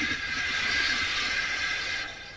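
Steady hiss of steam escaping from a steam locomotive stuck in a ditch, easing slightly in loudness.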